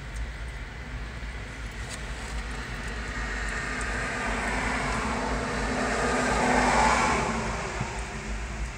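A freight train of empty autorack cars rolling past, with a road vehicle passing close by: the noise swells steadily to a peak near the end, then falls away.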